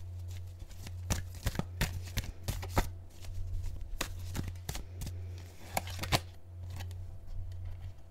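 Tarot cards being shuffled and handled by hand: an irregular run of short papery snaps and clicks, over a steady low hum.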